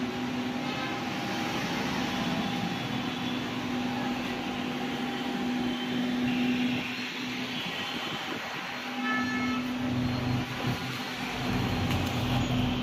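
A steady mechanical hum over a background rush, dropping out briefly a little past the middle, with a short high tone about nine seconds in.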